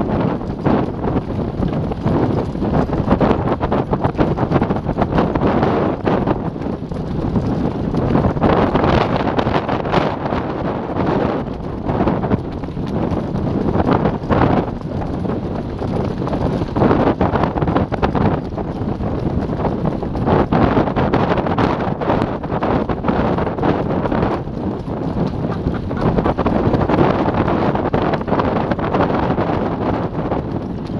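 Wind buffeting the microphone of a camera on a moving horse cart, loud and gusting, over the beat of a horse's hooves on a dirt track and the rattling of the cart's wheels and shafts.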